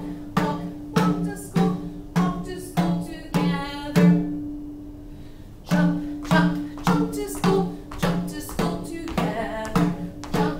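Hand drum struck in a steady walking beat, about two and a half strokes a second, each stroke ringing briefly. The beat stops for about a second and a half near the middle, then picks up again at the same pace.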